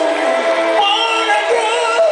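A live soul/R&B band playing with a sung vocal line, its held notes sliding up and down in pitch.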